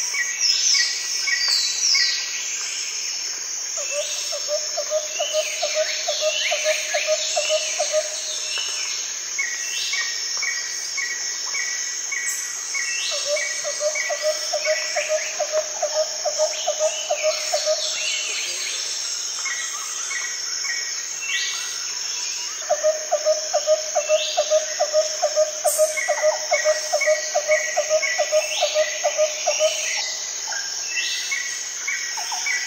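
Several birds calling over a steady, high insect drone. One repeats a low pulsed note several times a second in three long runs, and others give quick falling chirps and short series of higher notes.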